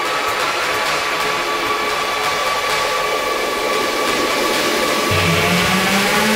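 Techno track in a breakdown without the kick drum: a sustained hissing noise wash with held synth tones, slowly growing louder. A low bass line comes in about five seconds in.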